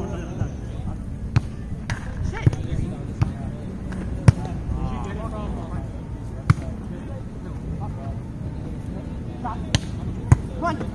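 Volleyball being struck by players' hands and forearms during a rally: a series of about six sharp slaps at uneven intervals, the loudest about four seconds in. Players' voices call faintly in the background.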